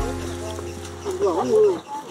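Background music ending on a held note, then a person's voice with a wavering, sliding pitch from about a second in.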